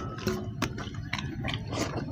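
Eating by hand: fingers mixing and scooping rice on a stainless steel plate, with open-mouthed chewing and irregular sharp clicks about every third of a second.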